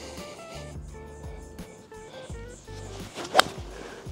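Background music with a steady bass line; about three and a half seconds in, one sharp crack of an eight iron striking a golf ball off turf, a shot the golfer judges a little heavy.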